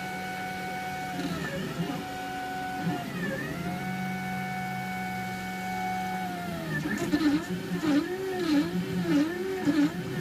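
XYZ DaVinci 1.0 3D printer's stepper motors whining as the print head moves, the pitch rising and falling with each move as it starts laying down plastic. There are a few longer moves at first, then from about seven seconds in a quick run of short back-and-forth moves, about two a second.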